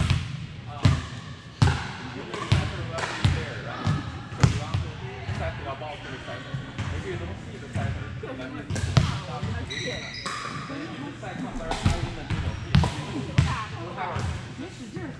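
Volleyballs being hit and bouncing on a hardwood gym floor: sharp slaps and thuds at an irregular pace of one or two a second, echoing in a large hall, with players' voices in the background.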